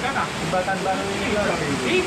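Indistinct voices talking over a steady rushing din under a road bridge, from a fast-flowing water channel below and traffic on the road overhead.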